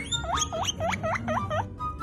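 Guinea pig wheeking: a quick run of about six high, whistling squeals, roughly four a second, each swooping down and back up in pitch.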